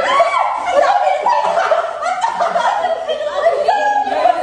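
A group of adults laughing and chuckling together, several voices overlapping.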